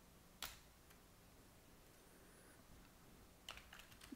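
Computer keyboard keystrokes: one sharp key click about half a second in, then a short run of quieter key clicks near the end, with near silence between.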